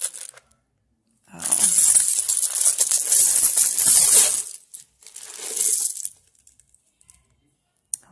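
A large heap of buttons being poured out of a container, spilling and clattering against one another in a long, dense rush. A shorter, quieter spill follows about a second later.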